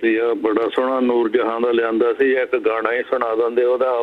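A man's voice coming in over a telephone line, thin and narrow-band with the lows and highs cut off, held on long pitched notes.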